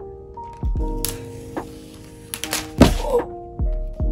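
An aluminium MacBook Pro being handled over its box, over steady background music: a papery rustle of the protective sheet, then a knock of the case about three seconds in.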